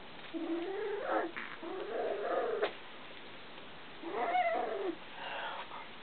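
Cavalier King Charles spaniel puppy whining in play, four drawn-out wavering cries that rise and fall in pitch, with a sharp click near the middle.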